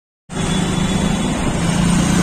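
Road traffic heard from a moving vehicle: an engine running steadily under a continuous rush of traffic noise. The sound drops out completely for about a quarter second at the very start.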